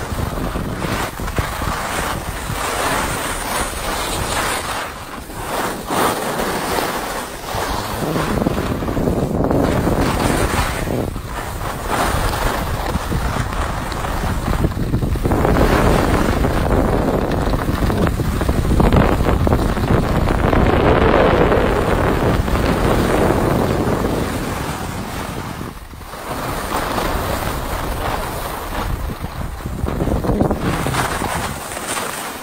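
Wind rushing over the microphone of a skier going down a piste, mixed with the hiss and scrape of skis on snow. The noise swells and eases with the turns, is loudest in the middle stretch and dips briefly near the end.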